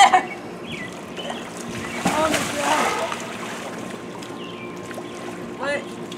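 Children's short wordless cries and exclamations over light splashing and sloshing of pool water, with the louder calls about two seconds in and a short one near the end.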